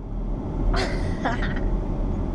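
Steady low road and engine rumble inside a moving car's cabin, with a couple of brief laughs near the middle.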